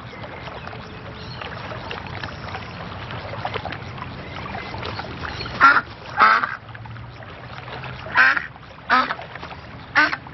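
Duck quacking in short, loud honking calls: two close together a little past halfway, two more about two seconds later, and another at the very end.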